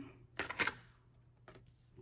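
A few short, soft rustling clicks as a curly wig is handled and lifted: two close together about half a second in, and a fainter one a second later.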